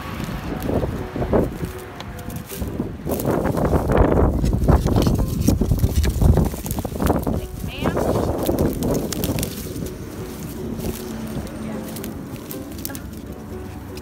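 Dry twigs and leaf litter rustling and crackling in irregular bursts as a hand pushes through them close to the microphone, with a low rumble underneath. It is loudest between about three and nine seconds in.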